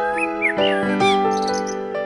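Slow piano music, with several short rising and falling chirps of bird calls heard over the notes in the first second.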